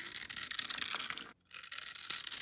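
Blade slicing through a bar of soap scored into tiny cubes: a dense, crunchy crackle as the cubes break away. It drops out for a moment about two-thirds of the way through.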